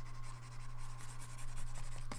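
Faint scratching of a pen stylus drawn across a graphics tablet as brush strokes are painted into a layer mask, over a steady low electrical hum.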